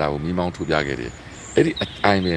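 A man talking, with high, thin, steady insect calls sounding faintly behind his voice from about a third of the way in.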